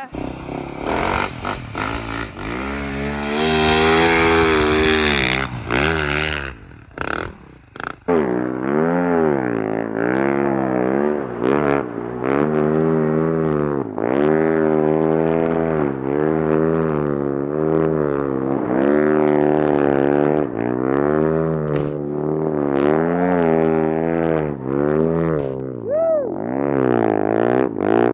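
Husqvarna 450 snow bike's single-cylinder four-stroke engine revving hard. It holds high revs at first and cuts out briefly a few times around six to eight seconds in. After that it swings up and down in pitch over and over, about every one and a half to two seconds.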